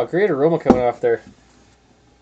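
A man's voice for about a second, not making words, with a single sharp knock partway through as a pint glass is set down on the table.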